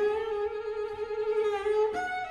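Double bass played high in its register, bowing one long held note, then moving to a higher note near the end.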